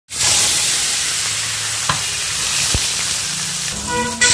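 Spice-coated gutum loaches hitting hot oil in a wok and sizzling loudly as they start to fry. The sizzle eases a little over the seconds, with a couple of light clicks in it.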